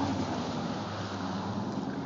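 Steady low mechanical hum under an even outdoor hiss, with no distinct events.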